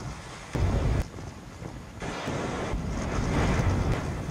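Rumbling, whooshing sound effects from the music video's animated fire sequence, with a louder surge about half a second in and a swell building through the second half.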